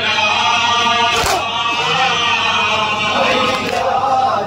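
Male voices chanting a noha, a Shia mourning lament, led at a microphone with men joining in. A sharp slap about a second in, and a fainter one near the end, is the beat of matam: hands striking chests.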